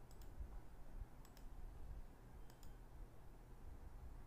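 Faint, sharp clicks in three quick pairs, about a second and a quarter apart, over a low steady room hum.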